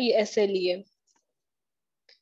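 A lecturer's voice finishes a spoken question in mixed Hindi and English, then stops. There are faint light taps of a stylus writing on a tablet's glass screen.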